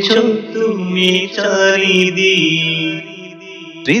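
Male voice singing a Bangla Islamic song (gojol), drawing out long held notes in a chant-like melody. The voice fades about three seconds in, and the next sung line starts near the end.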